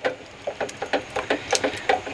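Silicone spatula stirring eggs in a stainless steel saucepan: a quick, irregular run of light scrapes and taps against the pan.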